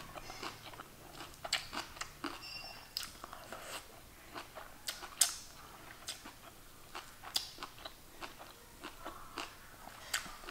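Close-up chewing of a collard green leaf wrapped around rice and gochujang, with irregular short clicks throughout.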